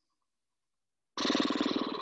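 A person's audible exhale with a rough, rattly voice, about a second long, starting after a second of silence.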